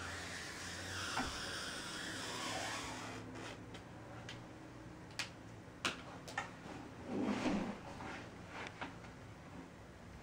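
Quiet handling sounds of a wooden coffee table being worked around and shifted on foam padding: a soft scraping rustle for the first few seconds, then a few light clicks and knocks and a duller bump.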